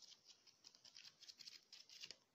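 Faint, rapid patter of paper pages being flicked one after another off the thumb as a paperback book is riffled.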